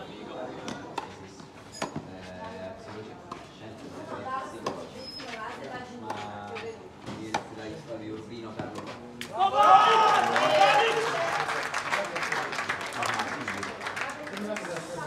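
Tennis ball struck by rackets during a rally on a clay court, sharp irregular pocks under spectators' chatter. About nine and a half seconds in, the crowd breaks into loud cheering and shouting, which keeps on.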